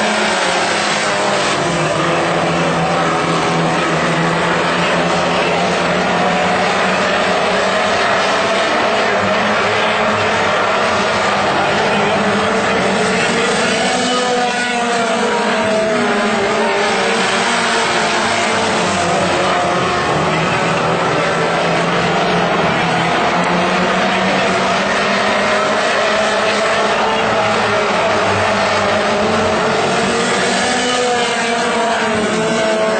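Several Wissota Mod 4 dirt-track race cars with four-cylinder engines running hard around the oval, their engine notes overlapping and rising and falling in pitch as the pack goes around.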